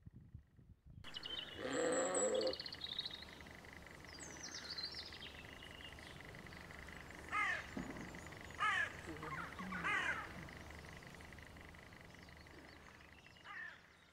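Pasture ambience: a sheep bleats once about two seconds in, and small birds sing. Crows give three loud falling caws in the second half, with a fainter call near the end.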